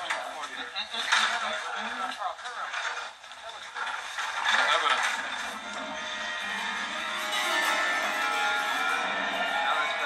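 Soundtrack of a TV featurette played through a television speaker: people's voices in the first few seconds, then background music from about halfway through.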